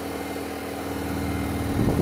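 Home oven running with a steady hum, a bit noisy, with a brief low rumble near the end.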